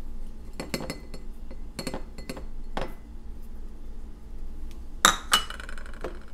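Light clinks and taps of a small bowl against a tall glass as mint leaves are tipped in, then a louder, briefly ringing glass clink about five seconds in.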